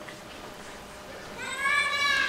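A single drawn-out, high-pitched vocal sound, like a squeal or a held 'ooh', starting about one and a half seconds in and lasting just under a second.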